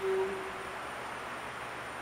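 A woman's voice holds one steady sung note for under a second at the start, then only faint room hiss remains.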